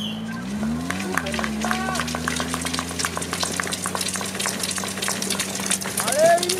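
A motor running steadily, its pitch rising and falling once about a second in, under a dense patter of small sharp clicks and a few short shouts from the crowd at a ski-mountaineering race start.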